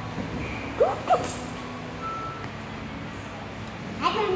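Two short, high yelps from a voice, about a third of a second apart and about a second in, over a faint steady low hum.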